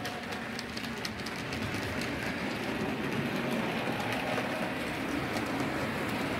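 Model railway train running along the track: a steady whirring rumble of the motor and wheels, with light, irregular clicks as the wheels cross rail joints and points.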